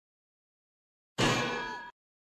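A single metallic clang, about a second in, ringing with many tones and fading before it cuts off abruptly: an intro sound effect.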